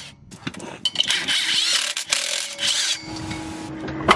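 Rusty rear brake rotor being twisted and worked off its hub, scraping and rubbing in repeated bursts from about a second in.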